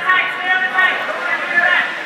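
Several raised voices talking and shouting over one another, with no clear words.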